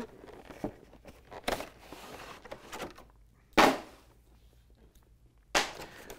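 Cardboard paint-set box being opened and its clear plastic packaging handled: light rustling and clicks, a short loud scrape a little past halfway, and another near the end.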